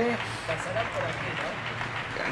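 Faint, distant voices over a steady outdoor background hiss of street and open air.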